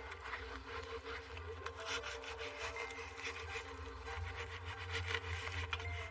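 Hands rubbing and smoothing a sheet of self-adhering rubber roofing membrane as it is unrolled and pressed down onto the roof edge: an irregular run of rustling, scraping strokes.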